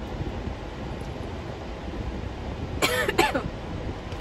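Steady low road rumble inside a moving car's cabin, with two quick coughs or throat-clearings by a person about three seconds in.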